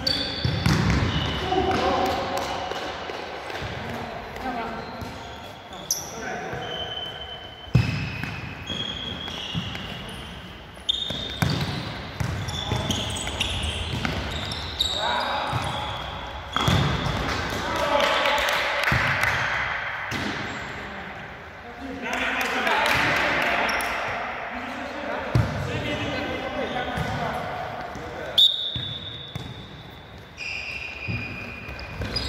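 Indoor futsal play in a sports hall: the ball kicked with several sharp thumps, short high shoe squeaks on the court floor, and players shouting to each other, echoing in the hall.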